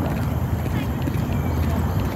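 A steady low rumble of wind on a handheld phone's microphone.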